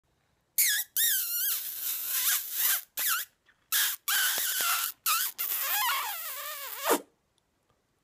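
A man making a string of high-pitched, wavering vocal sounds with pursed lips. The sounds come in about seven short and long stretches, and the pitch slides lower near the end.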